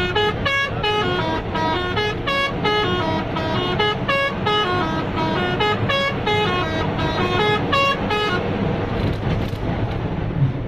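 Bus musical horn playing a rapid tune of short notes that step up and down in pitch, about three a second, stopping about eight seconds in. A steady engine and road rumble runs underneath.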